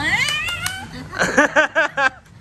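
A woman's high-pitched voice gliding upward in a squeal, then a quick run of about five high laughing syllables.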